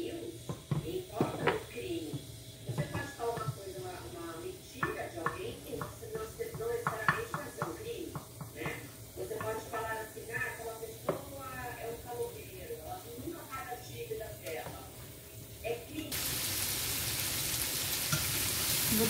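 A few light knocks from a wooden spoon and pan under faint background talk. About two seconds before the end, sweet potato slices start sizzling steadily as they fry in butter in a nonstick pan.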